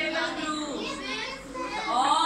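Several young children's voices talking and calling out over one another.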